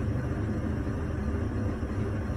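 A steady low rumble of background noise with a faint hiss, unchanging throughout, with no distinct events.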